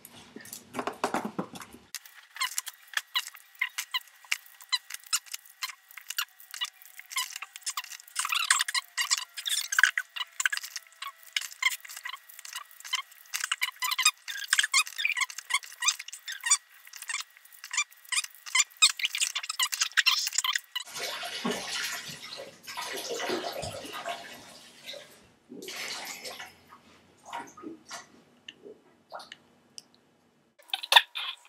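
Candy wrappers crinkling and crackling in a dense, long run of small sharp clicks, then a few seconds of splashing water.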